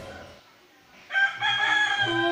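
A rooster crowing: after a short lull, one long held call begins about a second in.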